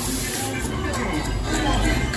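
Dark-ride show audio from speakers: character voices and music mixed together over a steady low rumble.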